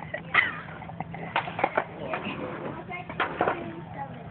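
A small dog lapping milk from a plastic cup held to its mouth: a few short quick wet clicks, three of them in a fast run about halfway through and two more near the end.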